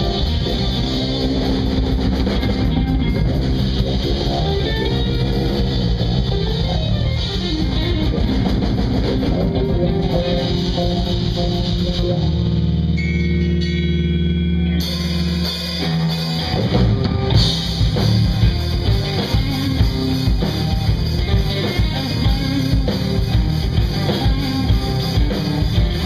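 Live instrumental rock played by a band of electric guitar, bass guitar and drum kit. About halfway through, the drums stop and held low notes ring for a few seconds, then the full band comes back in with hard, regular drum hits.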